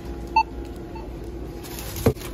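Self-checkout barcode scanner giving a short beep as an item is scanned, with a fainter second beep about a second in, over a low steady hum.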